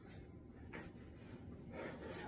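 Faint breathing of a man exercising, with soft breaths near the start and about a second in, over quiet room tone.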